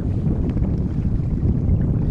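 Wind buffeting the microphone as a steady low rumble, with water moving past the hull of a small sailing trimaran.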